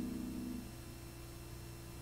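A male barbershop quartet's a cappella chord dying away about half a second in, followed by a quiet pause with only a low steady hum.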